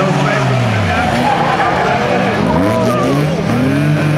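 Several folkrace cars racing on a gravel track, their engines revving, the pitch falling and rising again as the drivers lift off and accelerate through a bend.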